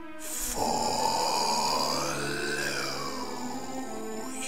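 A rough, growl-like sound effect lasting about three seconds, rising in pitch and then falling away, over background music.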